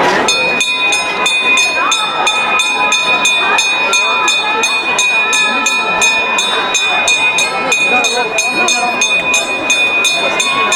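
A metal bell rung continuously, its strikes coming about four times a second, with its ringing tones held between strikes, over the voices of the procession crowd.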